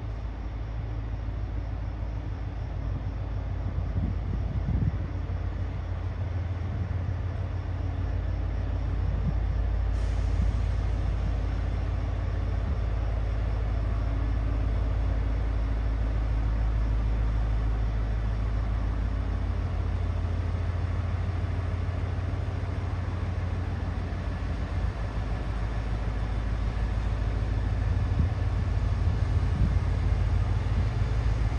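Diesel engines of a Trenitalia Minuetto diesel multiple unit running with a steady low drone as the train rolls slowly past.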